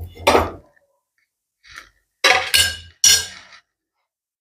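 Steel spatula clinking and scraping against a tawa and a plate as toasted pav is lifted off the griddle: three short clattering knocks, one near the start and two close together in the second half.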